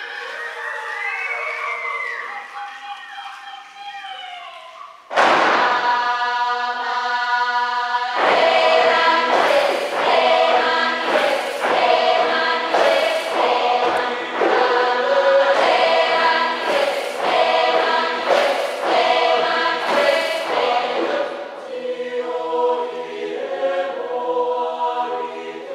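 Mixed choir singing a Brazilian native-song arrangement: voices slide up and down in pitch at first, then a loud full chord enters suddenly about five seconds in. Rhythmic chanting follows with sharp accents about every second and a half, settling into a softer held chord near the end.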